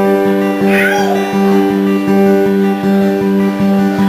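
Acoustic guitars strumming the instrumental intro of a country-folk song in a steady rhythm, about three strums a second.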